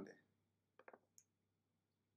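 Near silence, with a few faint short clicks about a second in.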